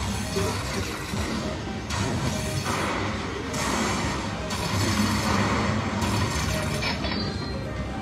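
Lightning Link Tiki Fire video slot machine playing its electronic reel-spin music and sound effects over several quick spins, against steady casino background noise.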